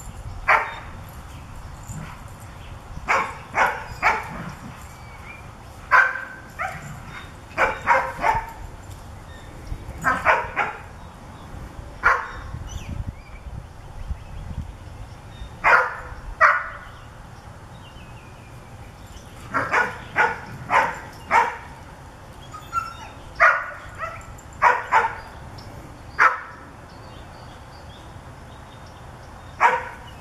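Two standard poodles barking up into a tree at squirrels. They give single barks and quick runs of two or three, with pauses of a second or more between, and stop a few seconds before the end.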